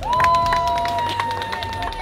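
Hands clapping in applause with a long, high-pitched held cheer that slowly drops in pitch.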